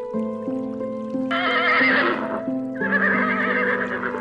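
A horse whinnying twice in quick succession, starting about a second in, each call with a wavering, quavering pitch, over background music with sustained notes.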